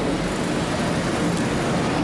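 Steady street traffic noise, mostly a low rumble from passing vehicles.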